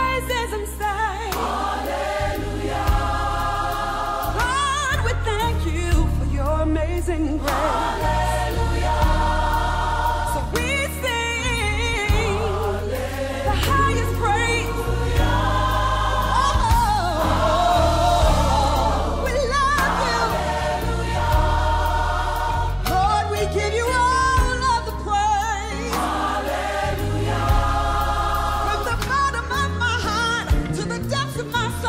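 Gospel music: a choir singing with instrumental backing and a steady bass.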